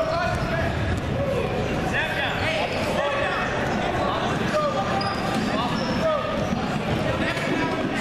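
Echoing noise of a large gym hall: indistinct voices, short squeaks and repeated low thuds.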